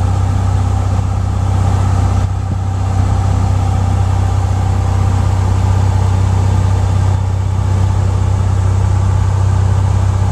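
Light airplane's engine and propeller running steadily in cruise-climb power, heard as a loud, low, even drone inside the cockpit.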